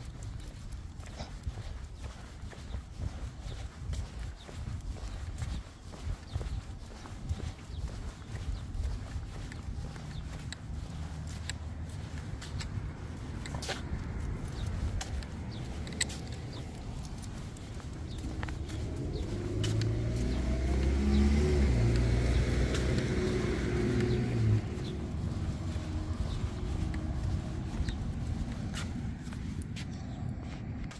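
Footsteps of a person and a small dog on a concrete sidewalk, with a car driving past on the street, louder for a few seconds about twenty seconds in.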